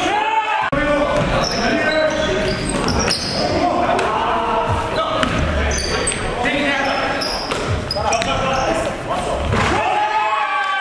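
Basketball game in a gymnasium: a basketball bouncing on the hardwood floor, sneakers squeaking, and players' voices, all echoing around the hall.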